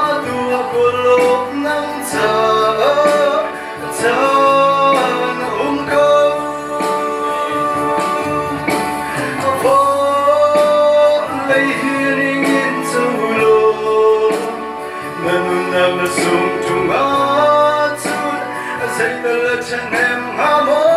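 A man singing a slow melody into a microphone over instrumental accompaniment, holding long notes.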